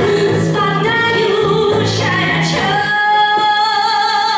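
A woman singing a song while accompanying herself on electric guitar. Near the end she holds one long note with vibrato as the low guitar notes drop away.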